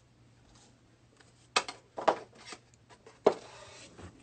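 Handling noise from cards and a wax pack on a desk mat: a few sharp taps and clicks, starting about one and a half seconds in, and the last one trails into a short rustle.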